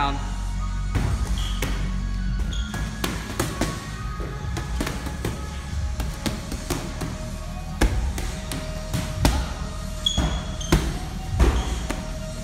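Gym background music with a steady low beat, over irregular thuds of boxing-gloved punches landing on heavy bags. The punches are loudest and most frequent in the second half.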